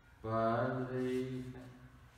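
A man's voice intoning one long, steady low note, chant-like, that starts about a quarter second in and fades away after about a second and a half.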